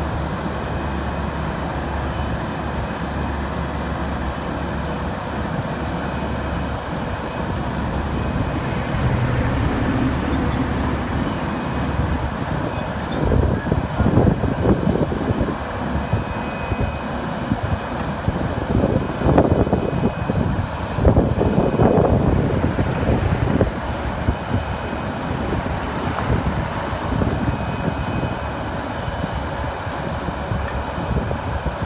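Asphalt paver's diesel engine running steadily, swelling louder and rougher in two stretches, about halfway through and again a little later, as if worked harder.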